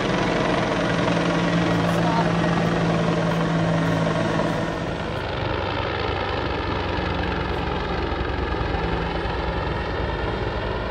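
Helicopter flying overhead: a steady drone of engine and rotor with a low hum, loudest in the first half and easing slightly about five seconds in.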